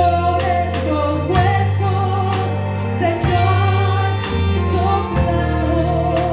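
Live gospel worship band playing a song with singers, over a steady drum-kit beat and a bass line that changes note every second or so.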